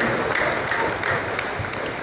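Large crowd applauding, the clapping dying down gradually.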